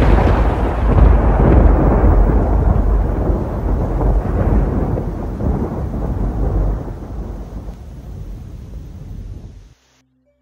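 Thunder sound effect: one long, loud peal of thunder that slowly dies away over several seconds and cuts off suddenly near the end.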